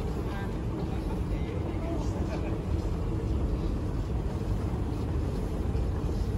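Moving walkway running with a steady low rumble, heard from on board, with faint voices in the hall.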